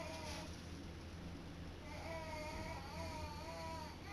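Cat meowing from inside a closed bathroom vanity cabinet where she is stuck: a short meow at the very start, then a longer, wavering meow about two seconds in.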